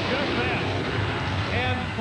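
Monster truck engines running hard as the trucks race over the jump and the cars. The engine rumble is mixed with crowd noise, with short voice shouts near the start and end.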